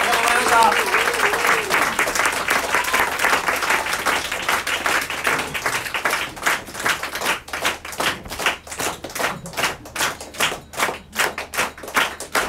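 Small audience applauding, with a few shouted cheers in the first seconds. About halfway through, the applause thins out to a few people clapping.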